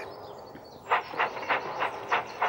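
Steam locomotive chuffing: evenly spaced puffs of exhaust steam, about three a second, starting about a second in.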